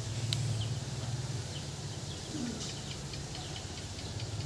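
Outdoor ambience: a low steady hum with a few faint, scattered bird chirps.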